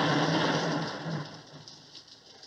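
Steady rain-like noise with a low hum beneath it, both fading away over the second half.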